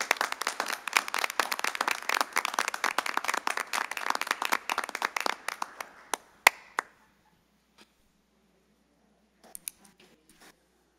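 A small audience applauding, the clapping dying away about six to seven seconds in. One sharp click follows, then a few faint taps near the end.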